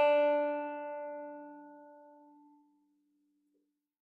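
Open first (D) string of a five-string banjo ringing after a single pluck, its bright note fading away and dying out about two and a half seconds in. The string is being checked against a tuner after being pulled to stretch it: it was slightly sharp and has come a little closer to pitch.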